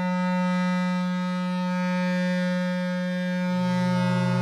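Electroacoustic music: a long held low clarinet note, sampled and sustained. A second, lower held tone comes in about three and a half seconds in.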